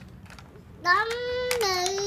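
A little girl's voice in a long, drawn-out sing-song call. It starts a little before halfway, holds one high note, then steps down to a lower held note.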